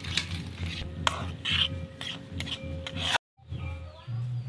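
Metal spatula scraping and stirring cooked vegetable curry around a steel kadai, in repeated short strokes about two a second, cut off abruptly about three seconds in.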